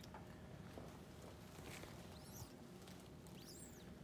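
Near silence: room tone with faint rustling and two brief, faint high squeaks, one a little past halfway and one near the end.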